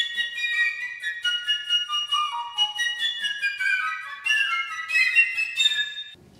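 Flute music: a line of high, overlapping notes that winds down to a lower register about two seconds in and climbs back up, then cuts off suddenly at the end.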